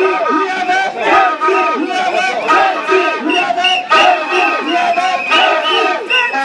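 A crowd shouting and chanting loudly, many voices overlapping, with a few sharp cracks about a second in and again near four seconds.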